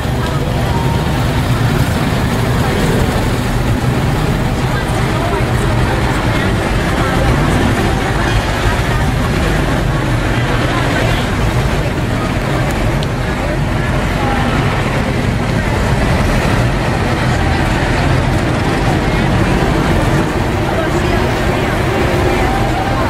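Antique cars and a vintage fire engine running as they roll slowly past, under steady chatter from the roadside crowd.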